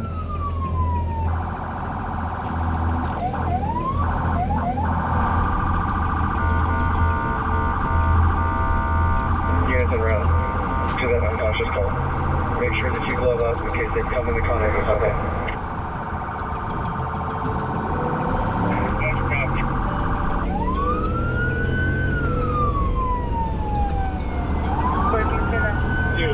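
Police patrol vehicle's siren heard from inside the cab on an emergency run. It gives a fast warbling yelp for most of the time, then changes near the end to a slow wail that rises and falls, over a steady engine and road hum.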